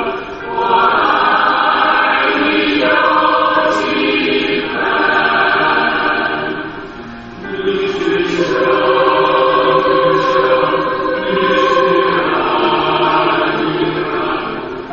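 A choir singing a slow song in long, held phrases as background music, with brief pauses between phrases.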